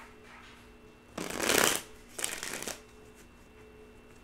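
A deck of tarot cards shuffled by hand, in two short bursts: one about a second in, and a shorter one half a second later.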